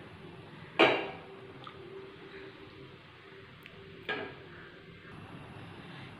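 A spatula stirring curry in a black cooking pot, with two clatters of the spatula against the pot, about a second in and about four seconds in, over a faint steady background.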